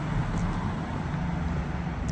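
Steady low outdoor background rumble with a faint hum, no distinct events.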